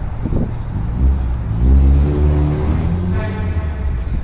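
2020 Yamaha YZF-R3's 321 cc parallel-twin engine running, with one rev that swells from about a second in and drops back after about three seconds.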